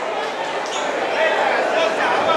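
Indistinct voices of people talking and calling out in a large arena hall.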